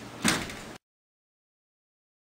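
A single knock on a sliding closet door about a quarter second in, then the sound cuts to dead silence before the first second is out.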